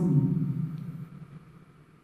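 A man's voice trailing off at the end of a read-aloud name, fading over about a second into the hushed tone of a quiet room.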